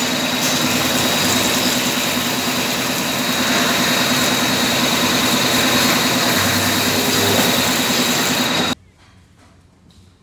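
Ace Micromatic Cub LM CNC turning centre running, with flood coolant spraying inside its closed guard. A steady high whine and a lower hum run through it. The sound cuts off abruptly near the end, leaving only faint room noise.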